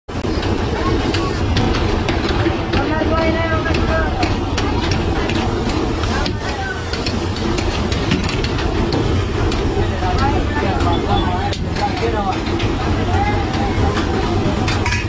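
Meat frying in oil on a large flat pan, with a metal spatula scraping and clinking against it, over steady background voices.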